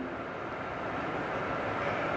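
A pause in speech filled by steady background noise with a faint hum, slowly growing louder.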